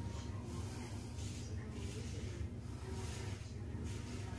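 Safety razor strokes scraping through lathered stubble: several short, faint scratchy strokes over a steady low hum.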